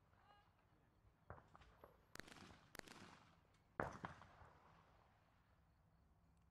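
Shotgun shots on a clay-target range, heard faintly: four reports spread over about three seconds, each with a short echoing tail, the loudest about four seconds in.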